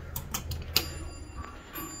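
Several sharp clicks from a 1994 Dover traction elevator as its floor button is pressed. They are followed by a faint steady high whine and a low hum from the elevator's equipment.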